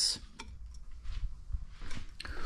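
Faint low rumble of a handheld camera being moved and handled, with a small click about half a second in.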